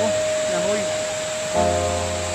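Background music: one long held lead note, joined by a sustained chord about one and a half seconds in, over a steady rushing hiss of the waterfall.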